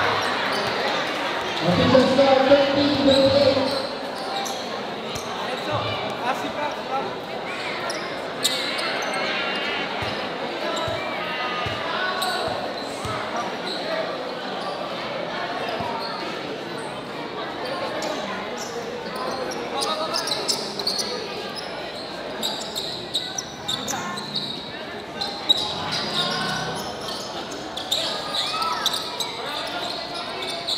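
A basketball bouncing on the court floor, with scattered knocks through the play, over the steady chatter of a large crowd and players' voices echoing in a big covered court. A louder shout comes about two seconds in.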